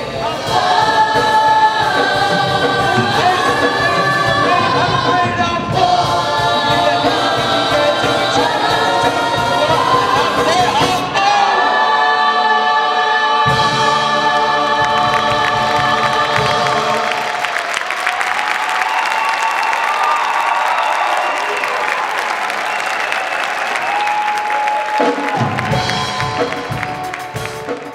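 A large cast chorus singing a stage-musical number with accompaniment. About two-thirds of the way through, the singing gives way to audience applause and cheering.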